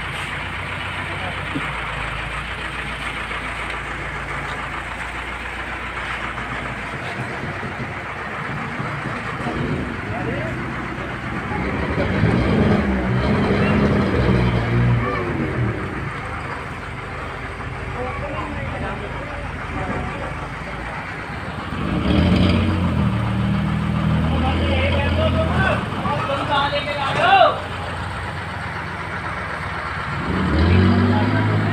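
A steady, noisy background with people talking at times, the voices loudest near the middle and again in the last third.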